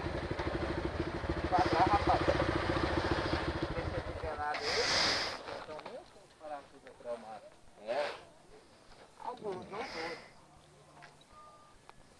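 A motorcycle engine idling with a quick, even pulse, switched off about four seconds in; after it stops, only faint voices are heard.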